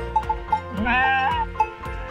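A sheep bleats once, about a second in, over background music.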